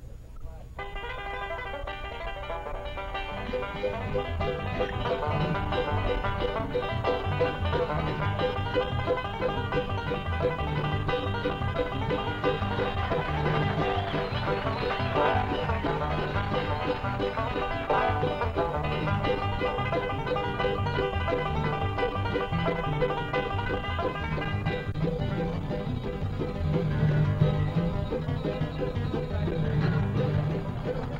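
Bluegrass trio of acoustic guitar, resonator banjo and mandolin playing an instrumental tune, starting about a second in, with fuller low notes joining a couple of seconds later.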